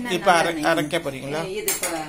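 Light metallic clinks of utensils against stainless-steel bowls, a few sharp ones shortly before the end, under a voice speaking.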